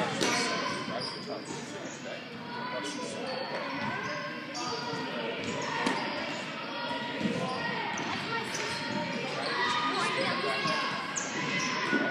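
Echoing ambience of a large indoor sports hall: background voices with repeated knocks and thuds of balls, and a sharper knock about six seconds in.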